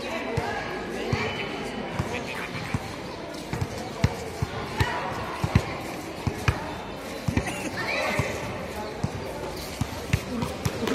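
Basketball bouncing on a hard outdoor court in live play, a string of sharp, irregularly spaced thuds, with players and onlookers calling out.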